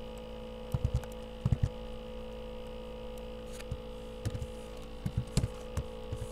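Steady electrical mains hum, with a few soft, scattered clicks and thumps of keyboard keys and a mouse as an equation is typed and edited on the computer.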